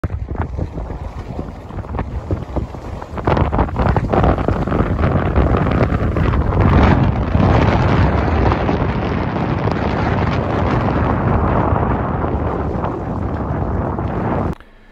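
Heavy wind buffeting the microphone on a moving boat over choppy water, a loud rumbling rush that grows stronger about three seconds in.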